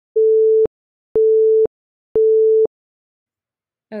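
Three electronic countdown beeps, one a second, each a steady mid-pitched tone about half a second long, counting down to the answer being shown.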